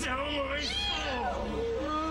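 A person whimpering: several wordless, wavering cries that rise and fall in pitch, over a steady low hum.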